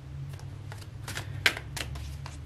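A deck of tarot cards shuffled by hand: a quick run of light card flicks and slaps, about eight in two seconds, with one sharper slap about halfway through.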